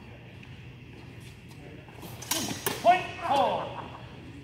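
Steel training swords striking, a couple of sharp clashes and hits about two and a half seconds in, then loud shouts as the exchange ends.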